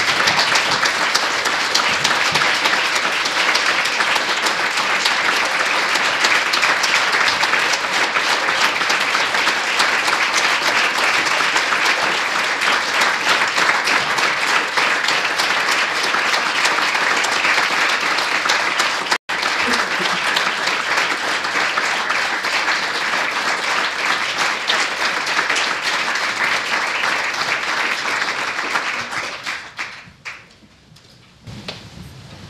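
Audience applauding: long, steady applause that dies away near the end, with a split-second break in the sound about two-thirds of the way through.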